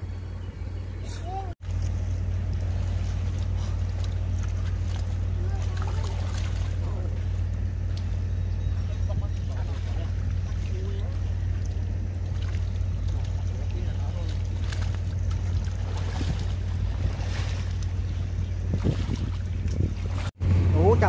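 A small engine running steadily with a constant low drone, with faint voices and scattered splashes over it.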